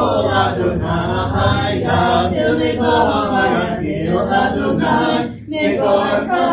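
Congregation singing a Hebrew liturgical chant together, unaccompanied, with a brief breath pause about five and a half seconds in.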